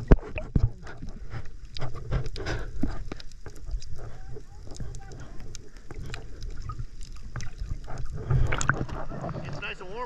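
Underwater sound of a snorkeler finning along: water rushing and sloshing around an action camera, with a low rumble and many small clicks. Near the end the sound changes as the camera comes up to the surface.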